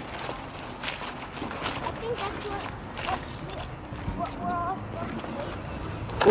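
Faint, indistinct voices over outdoor background noise, with scattered light knocks.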